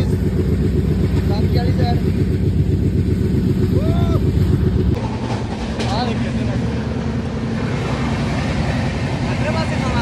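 Passenger train coach running on the tracks: a loud, steady rumble and rattle of wheels and carriage, with a few faint voices on top. The sound changes abruptly about halfway through.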